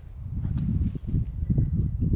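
Wind buffeting the phone's microphone: a low, uneven rumbling noise.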